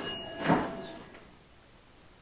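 A door banging: one heavy thump right at the start and a louder one about half a second in, each ringing on briefly in a hard-walled room before fading.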